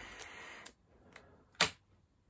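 A long sniff through the nose at a small paper packet, followed a second later by a single sharp click.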